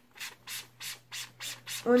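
Rhythmic scratchy rubbing, about three short strokes a second, from handling makeup at close range.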